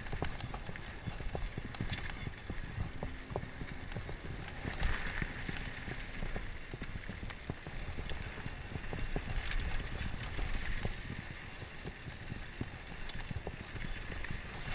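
Mountain bike rolling fast down a dirt and gravel trail: tyres crunching over loose stones while the chain and frame clatter in many quick, irregular clicks and knocks, over a steady low rumble of wind on the handlebar-mounted microphone.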